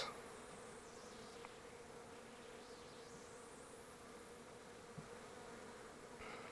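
Faint, steady hum of honeybees working on the exposed frames of an open hive, with one small click near the end.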